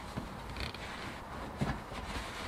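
Faint handling sounds as carpet is pressed and fitted by hand around a rubber shifter boot, with a short light click a little past halfway.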